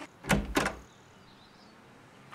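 A wooden interior door being shut, with two quick knocks in the first second, then quiet.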